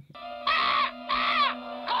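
Short howling cries from a cartoon soundtrack, each rising and falling in pitch: two in a row, with a third starting near the end, over a held eerie music chord.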